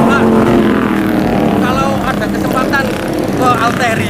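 A motorcycle engine running at a steady low speed, its pitch easing down slightly and fading over the first two seconds, under people's voices.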